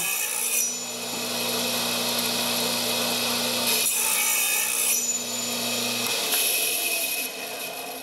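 Radial arm saw with a thin fret-slotting blade running and cutting the nut slot through an ebony fretboard, in several passes: the loudest cutting noise comes near the start, around four seconds in, and again about six and a half seconds in. The motor's steady hum stops about six seconds in.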